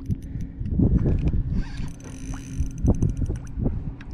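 Uneven low rumble of wind and water on an open fishing boat, with a short run of fast, light clicks about three seconds in.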